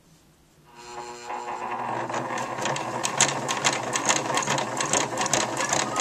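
Electric sewing machine starting up about a second in, speeding up over the next second and then stitching steadily at a fast rate with rapid needle clicks, sewing binding tape onto fabric through a tape binding presser foot.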